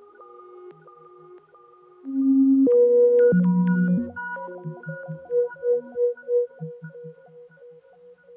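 Modular synthesizer music: held electronic tones with short notes dotted over them. A louder swell of low notes comes in about two seconds in, then a run of pulsing notes, about three a second, follows near the middle.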